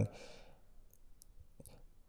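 Quiet room tone in a pause between sentences. A faint breath comes at the start, then a few small mouth clicks sound close to a handheld microphone.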